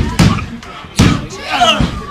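A referee's hand slapping the wrestling-ring canvas twice, about a second apart, counting a pinfall that stops at two.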